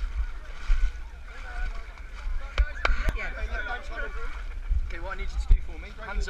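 Water sloshing and a low wind rumble on a small camera microphone, with three sharp knocks a little before halfway.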